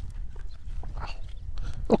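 Low wind rumble on the microphone with a few faint clicks and a faint distant sound about a second in; a man starts speaking at the very end.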